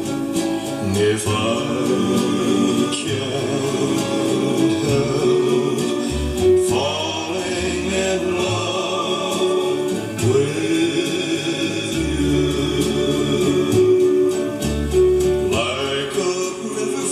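A song with singing played through a vintage ITT Schaub-Lorenz SRX75 receiver and a pair of bookshelf loudspeakers, heard in the room.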